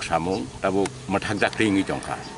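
A man speaking, in short phrases with brief pauses between them.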